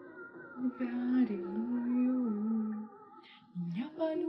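A woman singing slow, long-held notes that step up and down in pitch, breaking off just before three seconds in, then one short low note near the end.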